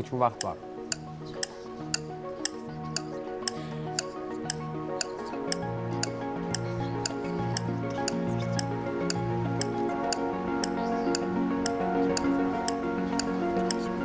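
Quiz-show countdown music timing a 20-second discussion: a clock-like tick about twice a second over held synth chords. A pulsing bass line comes in about halfway, and the music slowly grows louder.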